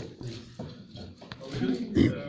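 Indistinct talking among people in a hall, louder near the end, with a couple of short sharp clicks.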